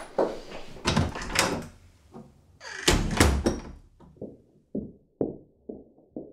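A few knocks and steps, then a door shutting with a bang about three seconds in. After that, soft music begins: short, fading notes, evenly spaced at about two a second.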